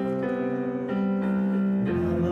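Digital piano playing slow, sustained chords, the harmony changing three times in two seconds.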